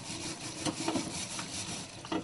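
Brush scrubbing a grill grate: a steady, scratchy rubbing.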